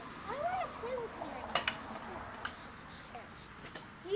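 Faint voices in the background, with two sharp clicks about a second and a half and two and a half seconds in, over a low steady hiss.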